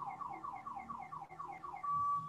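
A car alarm siren, faint in the background: rapid, evenly repeated falling chirps that switch to a steady tone near the end.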